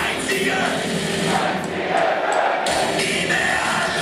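Live German punk rock band playing with the audience singing along; the bass and drums drop back for about a second, leaving mostly the crowd's voices, then the full band comes back in sharply just before three seconds in.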